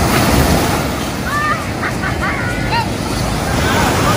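Ocean surf breaking and washing up on a sandy beach, a steady rushing wash. Faint distant voices call out between about one and three seconds in.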